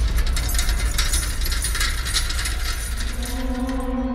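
Film sound effect: a dense metallic clicking rattle over a low rumble, easing off gradually. A held musical note comes in about three seconds in.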